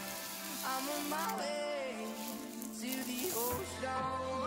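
Thin plastic protective sleeve crinkling as a tablet is pulled out of it, over background music with a wavering melody. The crackle is strongest in the first three seconds.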